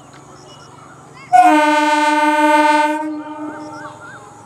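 EMU local train's horn sounding one long, steady blast that starts suddenly about a second in, holds for about a second and a half, then fades away.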